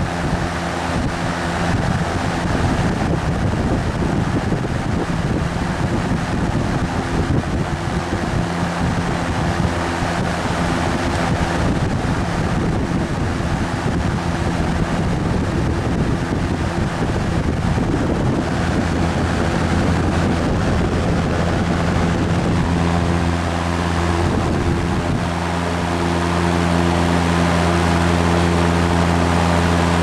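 General Electric W-26 window box fan running on high: a steady rush of air from the blades over the low hum of its shaded-pole motor. The motor's hum comes through more clearly over the last several seconds.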